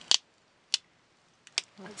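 A few sharp, short clicks and taps of craft supplies being handled on a work table, with a word spoken near the end.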